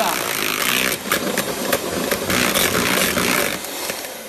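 Electric mixer beating yellow-tinted whipped cream (chantilly) in a glass bowl, a brief whip to bring it to the right stiffness. The motor noise runs with short knocks through it and stops near the end.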